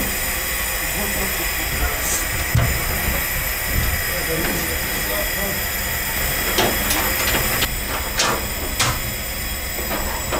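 Steady hiss of pressurized gas flowing through an argon regulator and fill line during a Halotron I transfer, with a few light clicks in the second half.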